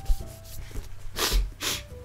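A book being handled and slid onto a stack of books: two short rubbing scrapes about half a second apart.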